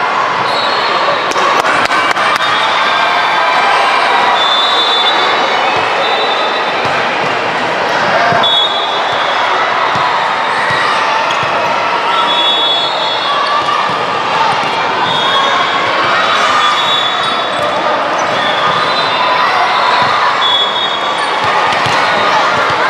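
Loud, continuous din of a volleyball match in a large sports hall: crowd chatter and shouting throughout, with short high squeaks scattered through it and occasional sharp thumps of the ball being struck.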